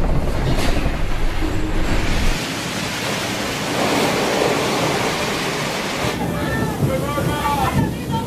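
Storm at sea. A steady low rumble under wind and crashing waves gives way, after a cut, to a loud even rushing of wind and water. Voices are heard near the end.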